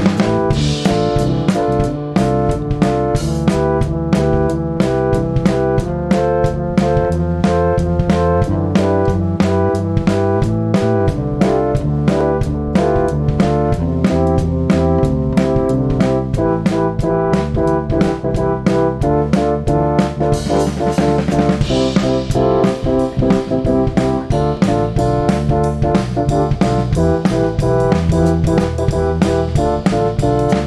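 A small band playing a steady groove on electric keyboard, electric bass (a Fender Mustang Bass) and drum kit, with cymbals washing brighter about twenty seconds in.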